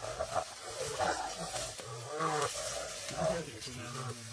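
Spotted hyenas calling in a group at a kill: a string of short cries, each rising and falling in pitch, about two a second.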